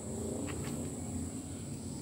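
Crickets droning steadily at one high pitch, over a low, even rumble.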